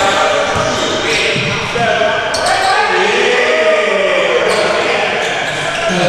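A basketball bouncing on a hardwood gym floor during play, with players' voices calling out across the court, all echoing in a large hall.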